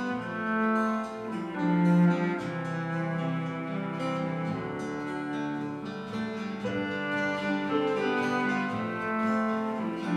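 Live acoustic band playing an instrumental passage: a cello playing long held notes over acoustic guitars.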